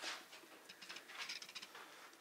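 Faint rustling and light clicks of hands working cotton twine around the tied end of a stuffed salami casing.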